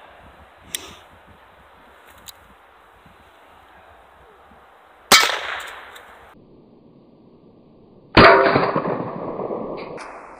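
Two shots from a Heritage Rough Rider .22 single-action revolver firing Remington Thunderbolt .22 LR rounds, about three seconds apart, the second louder, each ringing out for a second or two. A couple of faint clicks from handling the revolver come a second and two seconds in.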